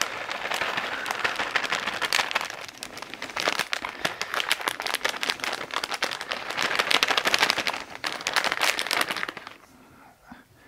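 A plastic bag of grated cheese crinkling as it is squeezed and shaken out into a steel mixing bowl, in a dense run of irregular crackles that stops about half a second before the end.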